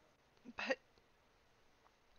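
A woman's voice saying one short word, "but", about half a second in, with quiet room tone around it.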